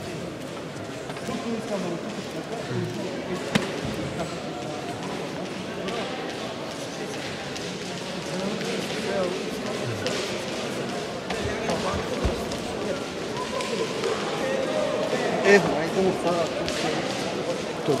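Indistinct chatter of many voices echoing in a large sports hall, with a few sharp thuds scattered through it.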